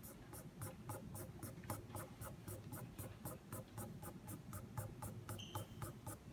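Pastel being rubbed across paper in quick, even back-and-forth strokes, about four a second, faint.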